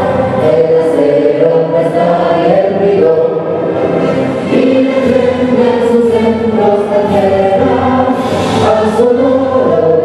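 A vocal trio of two women and a man singing held notes in harmony into microphones.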